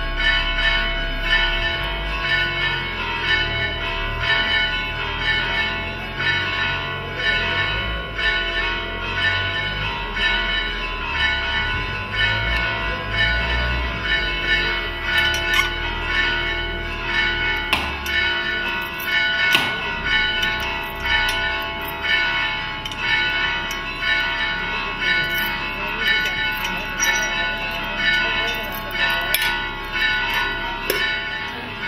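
Church bells ringing a continuous peal, several bell tones sounding together, with fresh strokes swelling about once a second.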